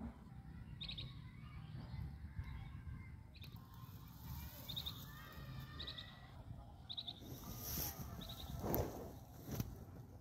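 Birds chirping in short, repeated calls over a low rumble of handling noise, with a short rustle and a knock near the end, the loudest sounds.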